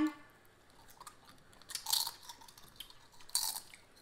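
Crunching and chewing of tortilla chips, in a few short separate bursts, the loudest about two seconds in and again near the end.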